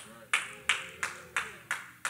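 Six sharp hand claps, evenly spaced at about three a second.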